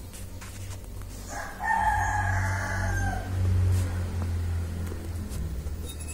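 A single drawn-out animal call of about two seconds, starting over a second in, held on one pitch and dropping away at the end, over a low steady hum.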